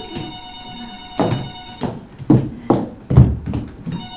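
Telephone ringing in two bursts: one lasting about two seconds, then a second ring starting near the end. Between them come a few heavy thumps on the stage floor; the loudest, about three seconds in, is louder than the ringing.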